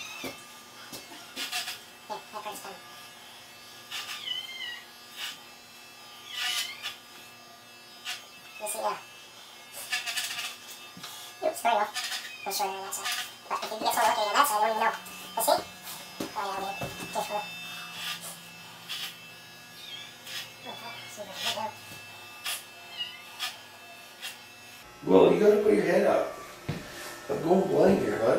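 Electric hair clippers running with a steady motor hum, with short bits of voice now and then and a louder voice near the end.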